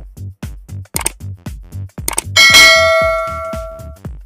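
Subscribe-animation sound effect: a short click about a second in, then a loud bright bell ding a little past two seconds that rings out over several steady tones and fades, over electronic background music with a steady beat.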